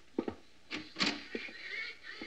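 Radio-drama sound effects: a few footsteps knocking on a wooden floor. From about a second in come faint calls of mallard ducks flying over.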